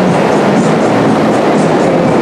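A loud, steady rumbling rush of wheels rolling on rails.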